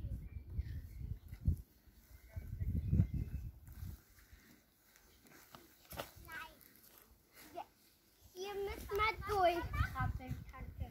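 A small child's high voice making short wordless babbling and squealing sounds, loudest and most continuous in the last second and a half, with bursts of low rumble at the start, about three seconds in and near the end.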